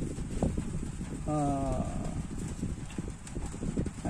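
Small clicks and knocks of a plastic dropper being handled against a drinking glass of water, used to draw up the water, with a brief low hum a little over a second in.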